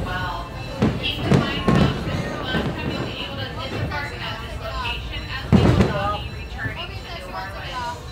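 Open passenger car of a steam railroad rolling slowly, with heavy low thumps from the cars: three about a second in and the loudest about five and a half seconds in. Voices and music carry on throughout.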